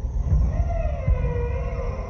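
Dark ambient passage from a thrash metal album's opening track: a low rumbling throb with uneven pulses, and a long wavering synthesized tone that enters about half a second in and slides down in pitch.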